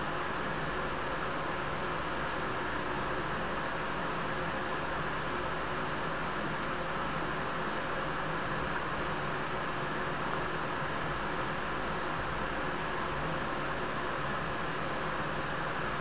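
A steady, even hiss of room noise that does not change, with no separate sound of the drag or the exhale standing out.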